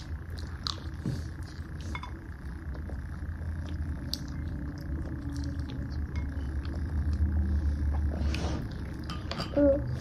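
Eating sounds: soft chewing and mouth noises with scattered light clicks of metal forks against ceramic plates, over a steady low hum. A short voiced hum shortly before the end.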